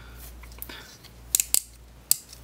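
Hard plastic parts of a FansProject Tailclub transforming robot toy clicking as it is handled and shifted: a few sharp clicks, with a quick cluster of them a little past the middle.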